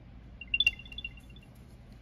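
Apple AirTag's power-on chime from its built-in speaker: a quick run of short high notes lasting about a second, with a click in the middle of it. It is the sign that the AirTag has switched on once its pull-tab wrapper is removed.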